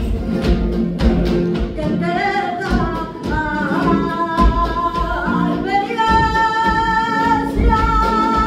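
Flamenco bulerías: a woman's voice singing over flamenco guitar and sharp rhythmic handclaps (palmas). The melody wavers through ornamented turns, then settles into one long held note about six seconds in.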